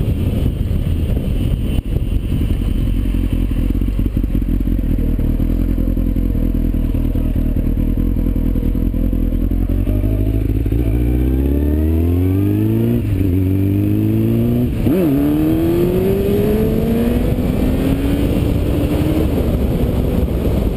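Kawasaki Ninja motorcycle engine heard from onboard the bike with wind noise, first cruising steadily, then accelerating hard through the gears. Its pitch rises, drops at an upshift about thirteen seconds in and again about fifteen seconds in, then climbs again.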